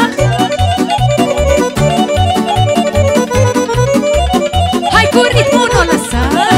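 Instrumental Romanian wedding dance music: a Hohner accordion plays a lively dance tune in fast runs over a steady bass and drum beat.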